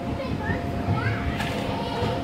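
Young children calling out and chattering as they play, over a constant background hubbub and a steady hum. A brief sharp tap sounds about one and a half seconds in.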